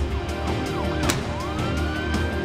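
A siren sweeping quickly up and down several times, then rising in one slower wail that levels off near the end. It plays over background music with a heavy low bass, and a sharp hit sounds about a second in.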